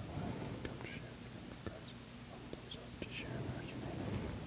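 A man's quiet whispered prayer, with a few faint taps of glass vessels being handled; the low prayer said while the wine is mixed with water in the chalice.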